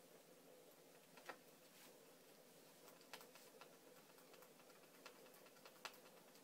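Near silence with a few faint, scattered ticks and clicks from hands handling the laptop's screen panel.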